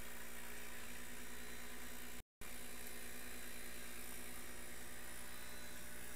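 A steady low machine hum with a faint hiss, as from the idle laser engraver setup and its mains power, broken by a brief total dropout a little over two seconds in.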